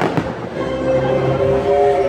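A firework bang at the very start, then the fireworks show's orchestral soundtrack holding a long, steady chord.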